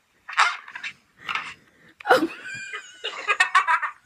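A dog barking and yelping in several short bursts, ending in a quick run of yips, heard through a phone's speaker.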